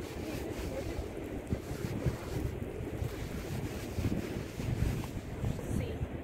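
Wind buffeting the microphone: a low, uneven rumble that rises and falls in gusts.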